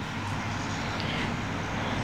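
Steady, even low rumble of engine noise, with no distinct events.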